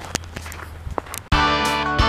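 A few faint footsteps on a snow-covered path, then strummed acoustic guitar music cuts in suddenly a little past halfway and is the loudest sound.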